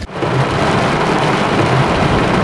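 Heavy rain pelting a car's windshield and roof, a loud, steady hiss, heard from inside the car, with a faint low rumble from the car beneath it.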